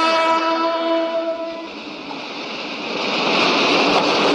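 A train horn holds one steady note and cuts off a little before halfway. An oncoming train's rushing noise then grows louder.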